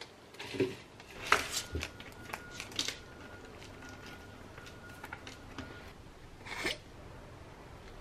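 Quiet kitchen handling sounds: soft rustles and light clicks as spinach leaves go into a plastic blender cup, then one louder, short rustle near the end.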